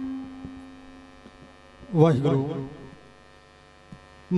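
Mains hum from a public-address system in a pause in singing. A held note fades away over the first second or so, and a man's voice gives a short phrase about two seconds in.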